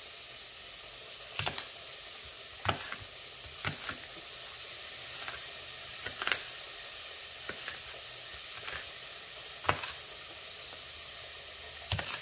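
Chef's knife slicing a red onion on a plastic cutting board: a sharp tap each time the blade meets the board, irregularly about every second or two. Under it, the steady sizzle of backstrap cutlets frying in a pan.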